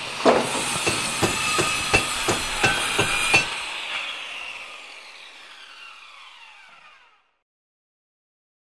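Logo sting: a run of about ten sharp knocks, about three a second, over a hiss and a high ringing tone, stopping about three and a half seconds in. A ringing tail then fades away.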